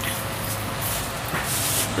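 Shopping cart rolling along a store's hard floor, a steady rolling noise over a low hum, with a brief hiss near the end.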